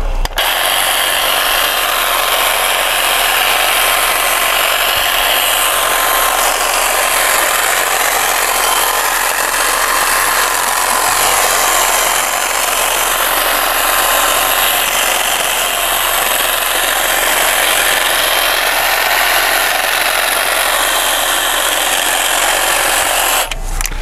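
Huter hedge trimmer running steadily as its reciprocating blades shear through thuja foliage, shaping the tree's top.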